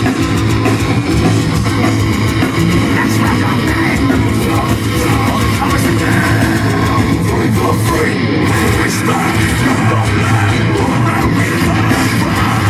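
Metalcore band playing live through a stage PA, heard from the crowd: distorted electric guitars, bass guitar and drum kit, loud and unbroken throughout.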